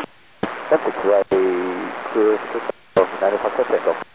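Air-band VHF radio traffic on a tower frequency: voice transmissions over a hissing carrier, each keyed on with a click. One runs from about half a second in with a brief dropout in the middle; after a short gap near three seconds, a second begins and cuts off abruptly at the end.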